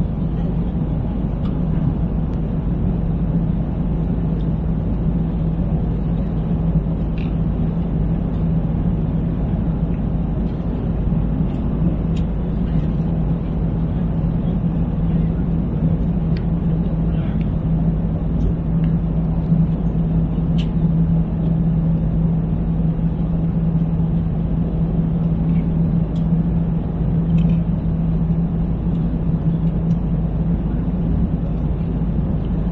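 Steady airliner cabin noise in flight: a constant low roar of engines and rushing air with a steady hum underneath. A few light clicks of plastic meal trays and a fork come through it now and then.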